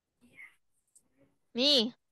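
Speech only: faint, quiet words early on, then one short spoken word near the end.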